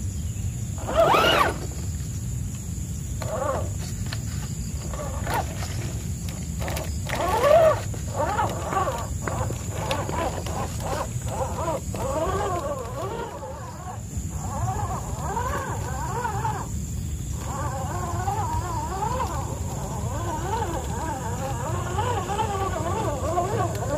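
The RC crawler's electric motor and drivetrain whine as it crawls over wet rocks, the pitch rising and falling with the throttle. The whine swells loudest in two short throttle bursts, about a second in and again about seven seconds in.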